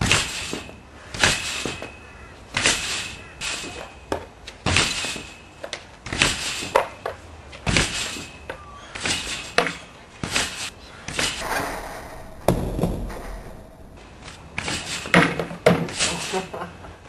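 Repeated thumps of a trampoline being bounced on with a trampboard, a regular beat of about one bounce every 1.3 seconds, with a break in the rhythm around twelve to fifteen seconds in.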